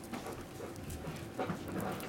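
Crinkly rustling and soft irregular clicks of a metallic foil tinsel cat toy being bitten and batted by a kitten, with a sharper click about one and a half seconds in.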